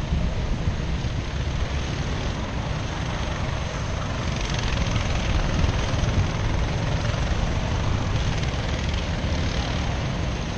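Racing kart engines running on the far side of the circuit, a steady distant drone that swells a little midway, over a low rumble of wind buffeting the microphone.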